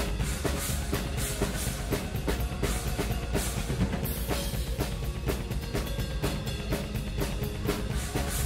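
Rock drum kit played at a fast, steady beat, with bass drum, snare and cymbal hits, over the band's symphonic metal backing.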